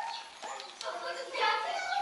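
A young child's high-pitched voice: a short call at the very start and a longer stretch of vocalising in the second half.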